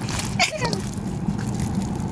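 Hands squishing and kneading sticky slime mixed with foam beads in a steel bowl, with faint wet crackling, over a steady low hum. A child's short exclamation with falling pitch comes about half a second in.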